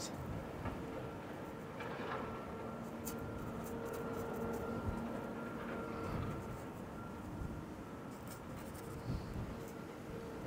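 A paintbrush working oil paint onto a painting board in soft, scratchy strokes, over a faint steady hum.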